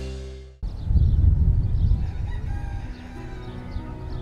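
Theme music fades out in the first half-second; then, after an abrupt cut, a rooster crows over a heavy low rumble.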